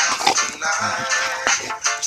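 Background music with a steady beat, with dogs growling over it as they tug at the same stick; a low growl stands out about a second in.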